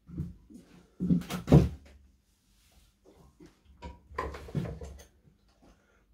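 Metal clatter and knocks from a bench vise being worked while a large nail is set in its jaws, the handle and jaws clanking. Two bursts, the louder about a second in and another about four seconds in.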